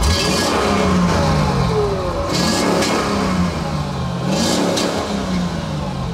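Mercedes-Benz W220 S-Class (S600L-badged) engine revved several times while the car stands still, the note rising and falling about three times.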